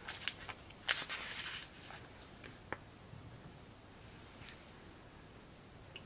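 Paper pages of a small hard-covered coloring book being handled and turned: a sharp rustle about a second in, then a few faint clicks and light rustles.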